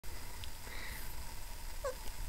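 A two-and-a-half-week-old Siberian Husky puppy gives one short, rising squeak near the end, over a faint low rumble.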